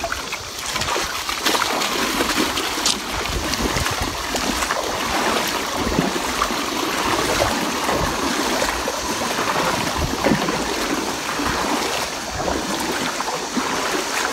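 River water running steadily, a continuous wash of flowing water.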